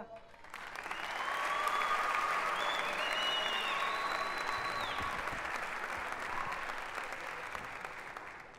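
Live theatre audience applauding, rising over the first two seconds and slowly dying away, with a few voices calling out over it.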